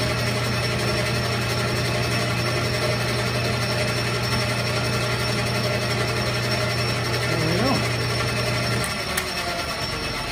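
Metal lathe running with a steady hum as its cutting tool turns down a thin metal rod held in the chuck. The spindle is switched off near the end: the hum cuts off about nine seconds in.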